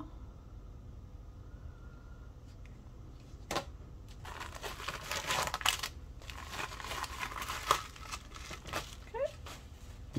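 Clear plastic zip-lock bag of nail rhinestones crinkling as it is handled. A single click comes a few seconds in, and the crinkling starts soon after and runs for about five seconds.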